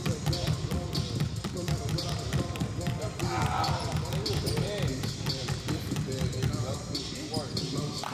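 Basketballs dribbled rapidly and low on a gym floor: a quick, continuous run of bounces, with voices over it.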